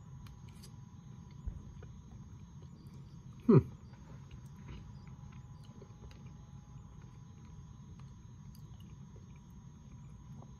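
Quiet chewing of a mouthful of cottage cheese over a steady room hum, with a few faint ticks. About three and a half seconds in comes one short, loud vocal sound that falls in pitch.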